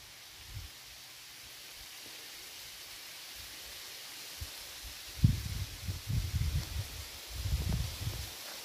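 Outdoor ambience with a steady hiss; from about five seconds in, irregular low rumbles and thumps on the camera microphone.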